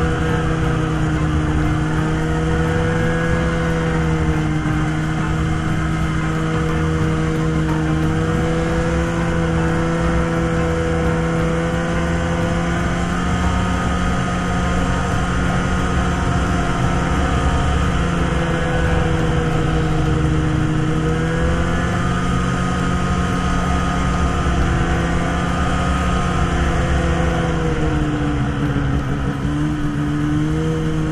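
Arctic Cat ZR 6000 RR snowmobile's two-stroke 600 twin running at a steady cruising speed along a trail. The engine note eases slightly partway through, then dips and picks back up near the end, over a constant rush of track and wind noise.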